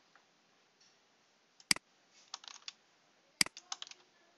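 Computer keyboard and mouse clicks: a few sharp, loud clicks, about a second and a half apart, with quicker, lighter key taps between and after them.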